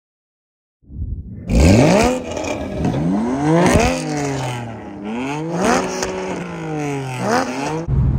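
Porsche Cayman GT4 and BMW M4 Competition accelerating hard side by side. The engines rev up through the gears, with the pitch climbing and then dropping sharply at each upshift, about four shifts in all. The sound starts suddenly about a second in.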